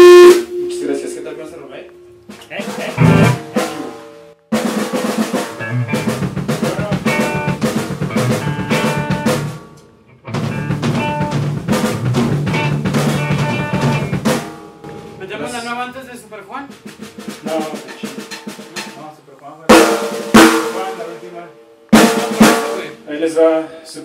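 Live rock band drum kit between songs: stop-start snare rolls, fills and rimshot hits, in two longer runs and then a few single sharp hits near the end, mixed with scattered pitched instrument notes and bits of voice.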